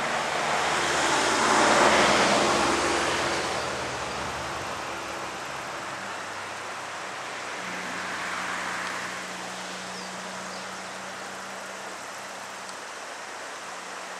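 Traffic noise from a road: a vehicle passes, its tyre and engine noise swelling to a peak about two seconds in and fading. A fainter pass comes around eight seconds in, over a steady low hum.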